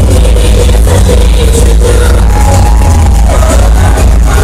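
Live pop music played loud over a concert PA, with heavy steady bass and a held melody line above it.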